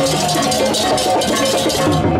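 Balinese processional gamelan (baleganjur) playing: rapid, dense strokes of hand cymbals and drums over the steady ringing of bronze kettle gongs.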